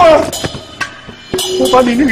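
Film fight-scene soundtrack: a man's loud shout at the start, then a couple of sharp hits over background music.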